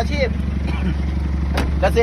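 Isuzu D-Max 2.5-litre four-cylinder diesel idling steadily, an even low hum.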